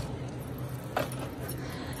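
A small plastic nursery pot of hoya being handled in its plastic tray: a sharp click at the start and another about a second in, with light rattling, over a steady low hum.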